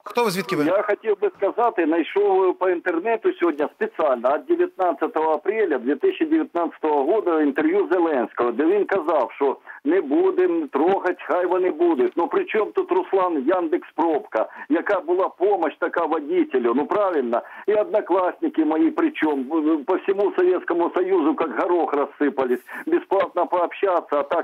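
A caller talking without pause over a telephone line, with the thin, narrow sound of a phone call.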